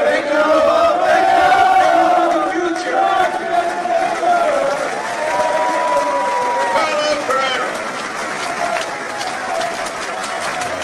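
Stadium crowd chanting and singing together, the voices held in long drawn-out notes. A single high held note stands out for a couple of seconds near the middle.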